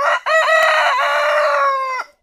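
A rooster crowing once: a few short notes, then one long, slightly falling note that cuts off suddenly.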